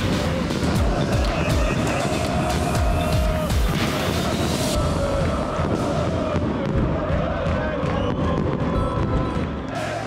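Fireworks going off in a rapid string of bangs and crackles over music. The crackling is densest in the first five seconds and thins out after that.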